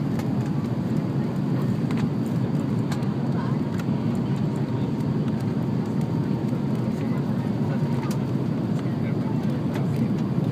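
Steady jet airliner cabin noise, the engines and rushing air heard from a window seat beside the wing-mounted engine. It is a constant low rumble with no change in level.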